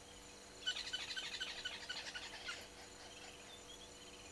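A bird calling in a rapid run of short, high notes for about two seconds, starting just under a second in, over a steady background of insects.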